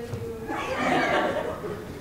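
Voices in a large hall with a brief burst of laughter, from about half a second in to about a second and a half.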